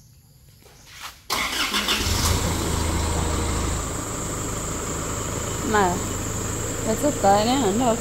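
Isuzu MU-X's diesel engine starting about a second in. It runs at a raised idle for a couple of seconds, then settles to a steady idle.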